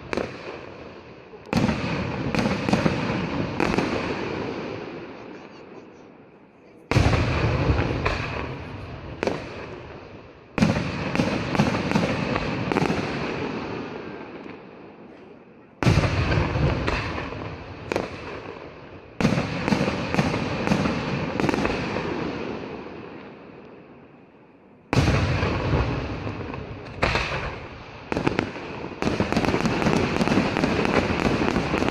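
Aerial fireworks shells bursting: a sharp report every few seconds, each followed by a crackling tail that fades over several seconds. The bursts come closer together near the end.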